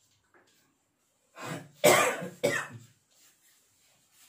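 A man clears his throat and then coughs twice in quick succession, about two seconds in, the second cough slightly weaker than the first.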